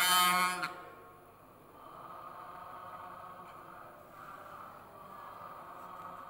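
A man's chanted prayer recitation, amplified through the mosque's sound system, ends just under a second in. After that only a faint steady hum of the hall and sound system remains.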